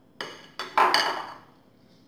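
Glass bowl set down on a granite countertop: a light knock, then a louder clink with a short ring, both within the first second.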